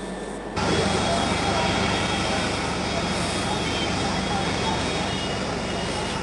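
A steady rushing noise cuts in about half a second in and holds, without speech. It is an open remote audio line on a live broadcast link that fails to connect.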